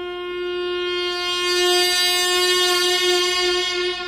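Piri, the Korean bamboo double-reed oboe, holding one long note that swells louder and brighter toward the middle and eases off near the end.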